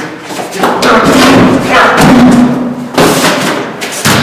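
Loud thuds of a person hitting and bumping against a wall, mixed with wordless vocal sounds.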